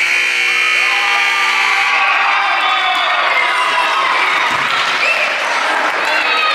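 Gym scoreboard buzzer sounding for about two seconds, the signal for the end of the game, then a crowd of children and spectators cheering and shouting.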